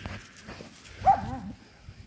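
A dog gives one short, high-pitched call about a second in, rising and then falling in pitch.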